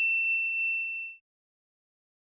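Notification-bell 'ding' sound effect of a subscribe animation. A sharp click is followed by one bright bell-like ding that rings for about a second and then stops abruptly.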